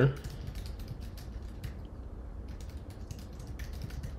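Typing on a computer keyboard: a run of quick, irregular key clicks as a name is typed in.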